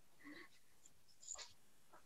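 Near silence: faint room tone on a video call, with two faint brief noises, one a quarter of a second in and one about a second and a half in.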